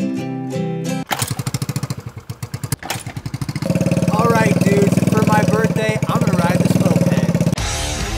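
Small scooter-style moped engine running at idle, growing louder about three and a half seconds in. A man talks over it.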